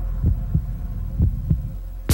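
Heartbeat sound effect from a film trailer: slow paired low thumps, about one pair a second, over a steady low drone.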